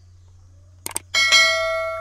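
Subscribe-button animation sound effect: two quick mouse clicks just before a second in, then a bright bell chime that rings on and slowly fades.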